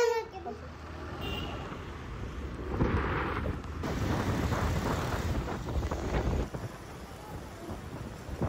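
Wind buffeting the microphone with road and traffic noise, heard while riding on the back of a motorbike through city traffic.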